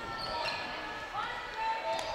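Faint sounds of basketball play on a hardwood gym floor: a ball being dribbled and a few short sneaker squeaks.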